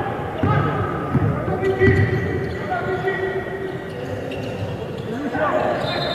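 A basketball dribbled on an indoor court floor, three bounces about a second apart in the first two seconds, under indistinct calling and talk from players and spectators echoing in a large gym.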